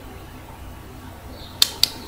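Two short, sharp clicks about a quarter second apart near the end, over a faint steady low hum.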